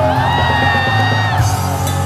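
Live rock band playing: a male singer belts one long, high held note for about a second and a half over electric guitar, bass and drums.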